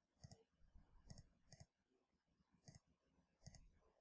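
Faint computer mouse clicks, about five, each heard as two quick ticks.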